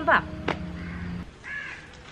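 A bird calls once, about one and a half seconds in, in a garden setting.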